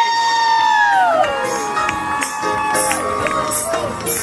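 Live music from the stage: a long held high note that slides down about a second in while other held notes carry on, with the audience cheering.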